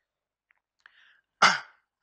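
A single short, sharp burst of breath noise into a handheld microphone about one and a half seconds in, after a couple of faint clicks.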